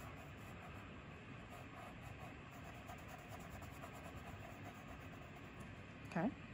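Faint, steady hiss with the quiet scratch of a soft 6B graphite pencil shading on paper.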